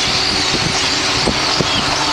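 Dense, steady chattering din of a huge flock of small birds on power lines and in the air overhead, with a few short thin calls standing out and low rumbling underneath.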